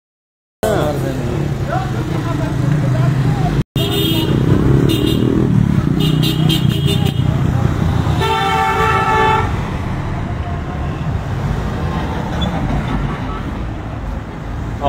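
A car engine running close by, with several short horn toots and then a longer car-horn blast of about a second, about eight seconds in.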